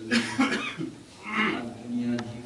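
A man coughing in short bursts, a couple of coughs near the start and another about one and a half seconds in.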